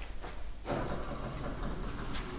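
A 1983 KONE elevator's automatic sliding doors begin to close about half a second in, running steadily along their track, over a low machine hum.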